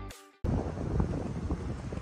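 Electronic background music fades out within the first half second, followed by a brief silence and then steady wind noise buffeting an outdoor microphone, heaviest in the low end.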